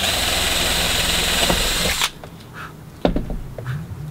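Cordless drill running steadily at full speed as it bores a small starter hole through a fiberglass shell, stopping suddenly about two seconds in. A single knock follows about a second later.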